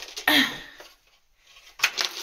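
A short murmur, then a stiff card warning tag on a gas meter being handled: a sharp click and a brief rustle near the end.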